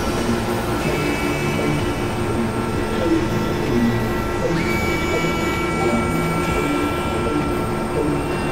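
Experimental synthesizer drone music: a dense, noisy industrial texture with flickering low tones and sustained high tones, one entering about a second in and another, higher one about four and a half seconds in.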